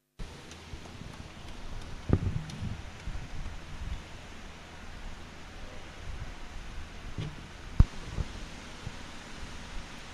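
Faint outdoor field ambience picked up by a broadcast microphone: a steady hiss, with a dull thump about two seconds in and a sharp click near eight seconds.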